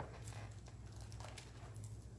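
Quiet room tone with a steady low electrical hum and a few faint clicks.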